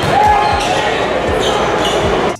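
A basketball being dribbled on a hardwood court in a reverberant gym, with voices and general hall noise around it. There is a few low thumps and a short squeak about a quarter second in.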